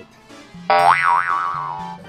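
A comic sound effect about two-thirds of a second in: a loud tone that swoops up in pitch, wobbles twice and slides slowly back down over about a second, laid over quiet background music.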